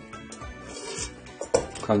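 Stainless-steel rice-cooker pot being handled and lifted out, with a few light metallic clinks, over quiet background music.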